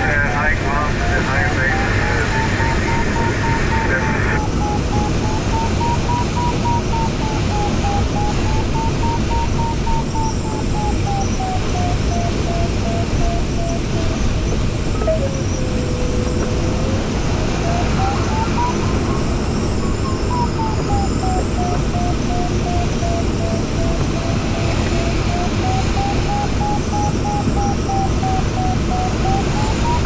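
Glider variometer beeping over steady airflow noise in a fiberglass sailplane cockpit. The beep's pitch rises and falls slowly as the glider's vertical speed changes, and around the middle it turns briefly into a lower, unbroken tone.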